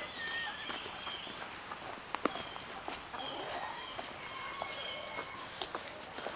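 Footsteps walking over dry fallen leaves, with scattered light knocks. Faint, short high chirps from birds come through several times.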